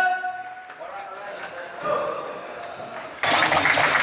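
A man's held shout fades out in the first second, followed by quieter voices in an echoing corridor. A loud rush of noise comes in near the end.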